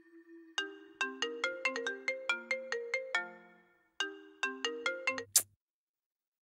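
Mobile phone ringtone: a melody of quick chiming notes, played through once and then started again, cutting off suddenly with a click near the end.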